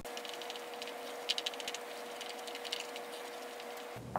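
Craft stick stirring shaving cream and white glue in a plastic bowl: faint quick scraping ticks of the stick against the bowl, coming in short spells.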